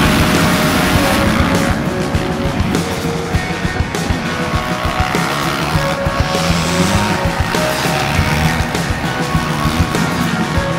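Off-road motorcycle engines revving hard as a pack of bikes launches off a grass start line and accelerates away, mixed with loud rock music.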